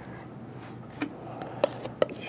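Palette knife tapping against the canvas as roof shingles are laid in: a few soft ticks, about a second in and twice near the end, over faint room hum.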